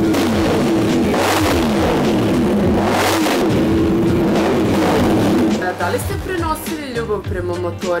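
Yamaha race bike's engine, started cold, running and being revved: its pitch repeatedly rises and falls. The engine sound drops away about five and a half seconds in.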